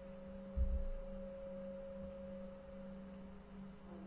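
Faint, steady held tones of an ambient background-music drone, with a soft low thump about half a second in.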